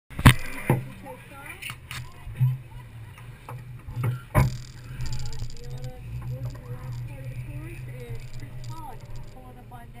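Car engine idling steadily at an autocross start line. Several sharp knocks and bumps in the first half come from handling of the hood-mounted camera. Distant voices run faintly over it.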